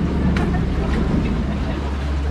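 Open canal tour boat under way, giving a steady low rumble with a noisy wash over it.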